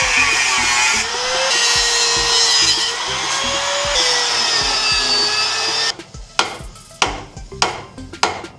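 Angle grinder cutting through the steel engine mounts on a chassis, its pitch dipping and recovering as the disc bites into the metal. It stops about six seconds in, followed by a few short sharp knocks.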